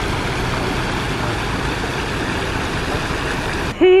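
Fountain water jets splashing steadily into the basin, an even rushing hiss that cuts off just before the end.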